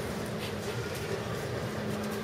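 Steady room noise with a low electrical or ventilation hum, and a faint click about half a second in.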